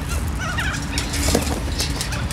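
Sulphur-crested cockatoos making soft, wavering chatter close by, over a steady low background rumble.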